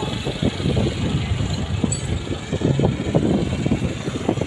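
Tractor engine running loudly close by, a steady low rumble.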